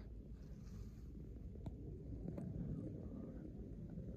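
Faint low rumble with three soft clicks spread through it.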